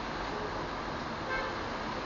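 Steady rain, an even hiss, with a short high toot about one and a half seconds in.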